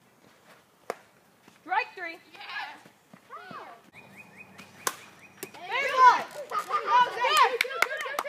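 Wiffle ball players shouting and calling out in short, high-pitched bursts, loudest near the end. Several sharp clicks are heard, bunched toward the end, and a thin steady high tone lasts about a second and a half from about four seconds in.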